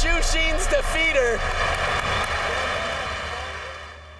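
Arena crowd cheering and applauding, with a man's voice calling out over it in the first second or so. The crowd noise fades out over the last two seconds.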